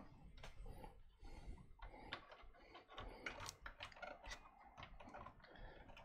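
Faint, irregular light clicks and taps: a cable and its plastic connector being handled and routed against the back of a PC case.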